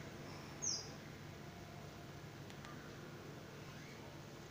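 Quiet room noise with one brief high chirp, falling slightly in pitch, about half a second in.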